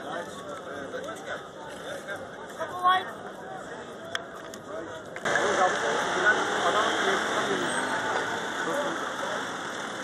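Indistinct chatter of a crowd of football fans walking, many voices overlapping with no clear words. About five seconds in it becomes suddenly louder and denser.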